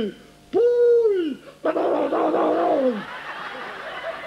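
A man's wordless vocal sound effect: a rising-then-falling "whee"-like glide, then a rough, raspy wail sliding downward, imitating a skier flying off a ski jump.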